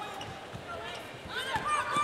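A basketball being dribbled on a hardwood court, as faint repeated bounces over low arena noise.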